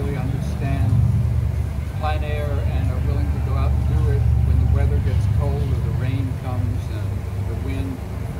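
Indistinct speech over a low, steady rumble that swells about a second in and eases off near the end.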